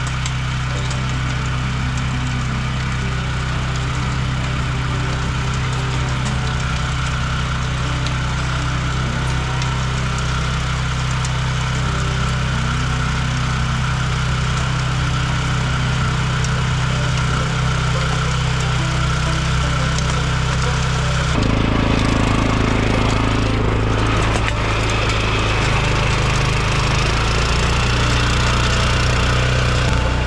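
Walk-behind rotary tiller's small engine running steadily under load as its tines churn the soil. About two-thirds of the way through the sound changes abruptly and gets a little louder.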